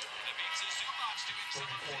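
Basketball arena crowd cheering, with music playing over the arena sound system, just after a made deep three-pointer, heard through a TV broadcast.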